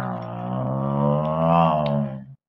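A person's voice making one long droning engine noise, imitating a toy car driving off. The pitch stays low and steady and lifts slightly about a second and a half in.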